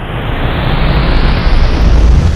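Logo-sting sound effect: a rising whoosh of noise over a deep rumble, building steadily louder toward the end.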